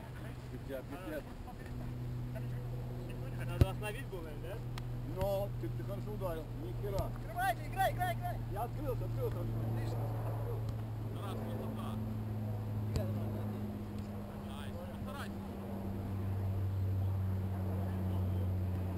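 A steady low motor drone from an unseen engine, shifting in pitch about eleven seconds in and again near the end. Distant players' shouts come and go, and one sharp thud, a soccer ball being kicked, stands out about three and a half seconds in.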